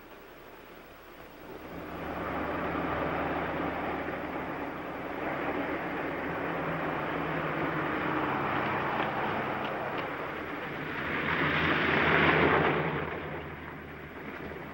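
Vehicle engine and road noise: a steady low engine hum under a wash of noise that swells in about two seconds in, is loudest about twelve seconds in, then drops off.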